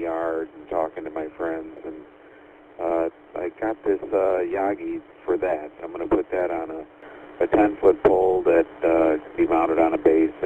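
A man talking over a two-way GMRS radio link. His voice is thin and narrow, cut off below and above the usual radio voice band, with a short pause about two seconds in.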